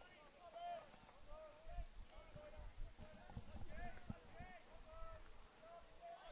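Faint, distant voices calling and chattering in quick, short calls, with low rumbling underneath.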